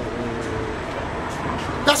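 Road traffic on a busy street, with a short vehicle horn toot lasting under a second near the start.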